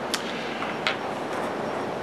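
Two faint clicks from handling a Ruger LCP pocket pistol, one just after the start and one before the middle, over a steady hiss.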